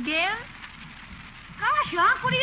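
A rising pitched glide as it opens, then about a second of steady hiss from the old radio recording, then a voice starting near the end.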